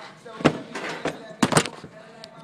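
Sharp knocks and clatters from a phone camera being picked up and handled: one knock about half a second in and a quick cluster around a second and a half in.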